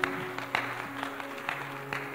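Background music: soft held chords with a steady beat of sharp hits about twice a second.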